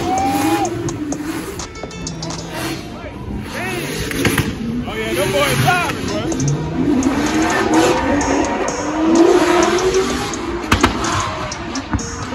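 Two drift cars' engines revving hard in a tandem drift, the revs rising and falling quickly over a haze of tyre noise.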